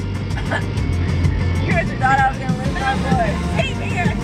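Young women singing inside a moving car, their voices wavering in pitch and strongest in the second half, over the car's steady low road rumble.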